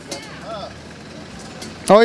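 Faint background chatter and a low steady hum from a busy outdoor market, then a man's voice breaks in loudly with a laugh near the end.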